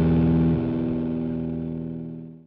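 The final held chord of a rock song ringing out and fading, its low end dropping away about half a second in.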